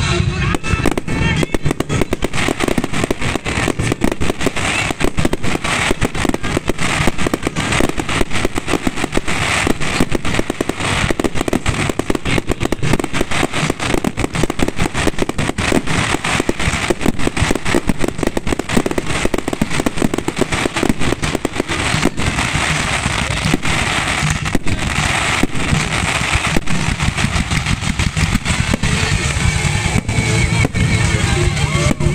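Fireworks going off in a rapid, unbroken stream of cracks and bangs, over loud music played with the show.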